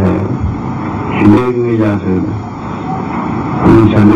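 A man's voice speaking in a slow discourse: one short phrase with falling pitch about a second in, a pause, then speech resuming near the end. Under it lies the steady hiss and faint high whine of an old videotape recording.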